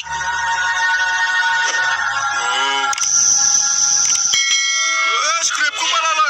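Cartoon soundtrack: a held chord of steady tones, then a brief vocal sound and a bright hissing shimmer. A new ringing, chime-like tone starts about four seconds in, and voices come in near the end.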